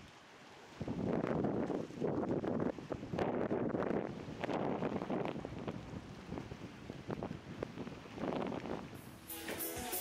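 Wind buffeting the camera microphone in irregular gusts. Music with a beat comes in about nine seconds in.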